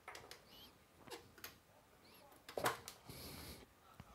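Faint clicks and scrapes of a metal tube shield being taken off and a preamp vacuum tube (the V1 12AT7) being pulled from its socket by hand, the loudest click about two and a half seconds in. A brief faint high squeak comes under a second in.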